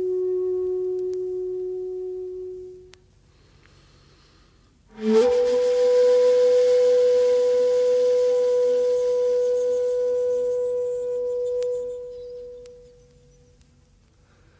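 Kyotaku, a long end-blown bamboo flute of the shakuhachi kind, playing slow, long-held notes: a low note fades out about three seconds in, and after two seconds of quiet a breathy attack opens a higher note held for about eight seconds that slowly fades away.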